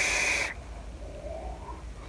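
A long drag on a Pulse squonk mod topped with an Athena rebuildable dripping atomiser: air hissing through the atomiser with a steady whistling note, cutting off about half a second in. After it comes a quieter stretch with a faint breath as the vapour is let out.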